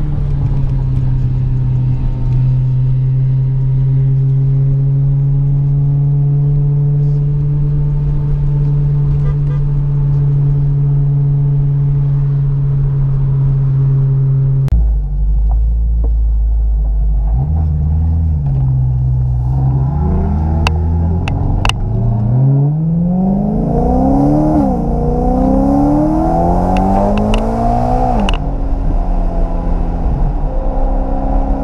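Supercharged BMW M3's V8 heard from inside the cabin: a steady drone while cruising for about the first half. After a cut, the engine revs repeatedly rise and drop as it pulls through the gears, with a few sharp clicks near the end.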